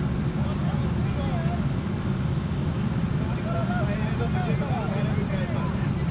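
Faint distant voices talking over a steady low rumble.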